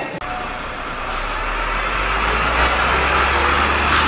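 A heavy road vehicle running: a low rumble with road noise that comes in about a second in and grows slowly louder.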